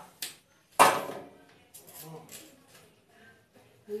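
Wire cutters snipping through a 1.8 mm wire rod of a bird cage: a small click, then one loud, sharp snap about a second in, followed by a few faint ticks.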